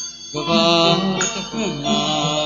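Burmese-style sandaya piano music. A short dip at the start gives way to a new phrase struck about a third of a second in, with another entry a little after a second.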